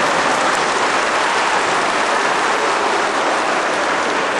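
A large crowd applauding steadily.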